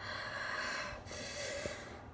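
Two long, breathy huffs by a person, about a second each, voiced as a toy figure's reaction in a play-acted scene.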